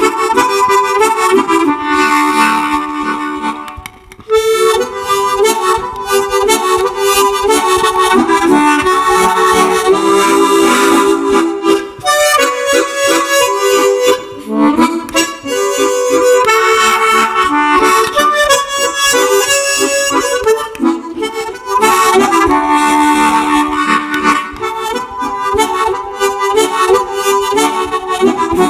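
Tremolo harmonica playing a Mediterranean-style melody, with a brief break about four seconds in.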